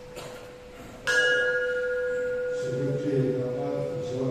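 A brass bell struck once about a second in, ringing with several clear tones that fade slowly.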